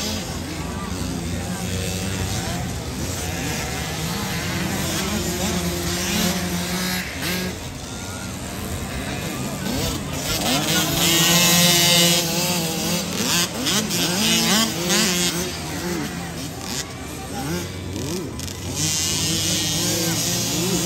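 Small mini-motocross dirt bike engines (50cc and 65cc class) running and revving, pitch rising and falling as the riders work the throttle. The engines are loudest about ten to twelve seconds in, with voices mixed in.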